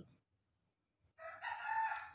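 A long, drawn-out pitched animal call begins just over a second in, after a near-silent first second, and carries on past the end.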